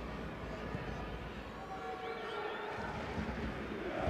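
Stadium crowd ambience: a steady wash of many distant voices and murmur from the stands, with a faint high warbling tone, like a whistle, about two seconds in.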